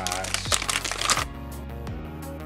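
Holographic foil blind-bag packaging crinkling as it is opened and handled, stopping a little over a second in, with background music underneath.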